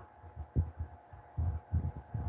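Soft, dull low thumps at an uneven pace, five or six of them in two seconds, over a faint steady hum.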